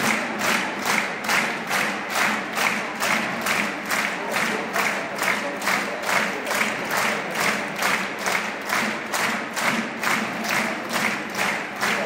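Stadium crowd of football supporters clapping in unison in a steady rhythm, about three claps a second.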